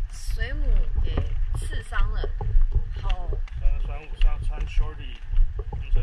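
A woman talking over a rough, low wind rumble on the microphone.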